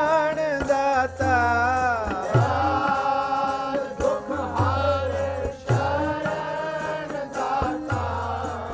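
Gurbani keertan: a man sings a shabad in a wavering melody over the held notes of a harmonium, with tabla playing deep bass strokes and sharp strikes beneath.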